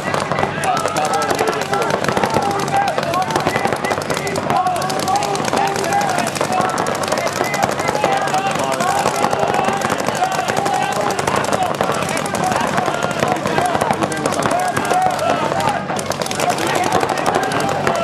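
Paintball markers firing in rapid, continuous strings, several guns at once, with voices shouting over the shooting.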